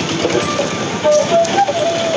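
Busy street noise: a steady din of motor traffic with faint voices in the background.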